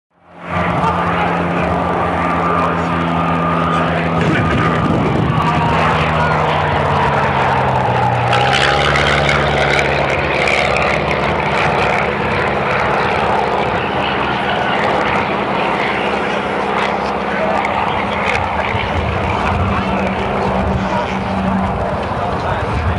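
Piston engines and propellers of two Auster light aircraft, an AOP.6 and a T7, flying past overhead in a steady drone. The pitch drops about eight seconds in as one aircraft passes.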